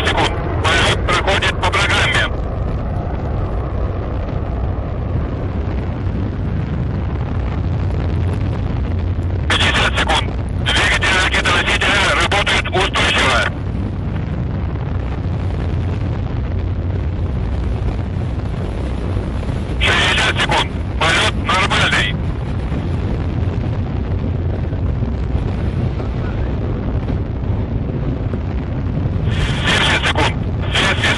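Continuous deep rumble of the Proton-M rocket's first-stage engines in flight. Short, clipped radio voice calls break in four times over it.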